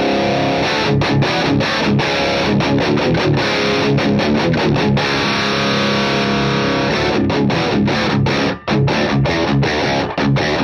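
Overdriven electric guitar played through a Matthews Effects Architect V3 Klon-style overdrive pedal into a Tone King Sky King combo amp. A held chord gives way to fast, clipped, muted riffing, with another chord ringing briefly near the middle and a short break late on.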